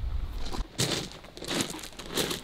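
Rubber boots crunching on loose gravel, a few irregular steps.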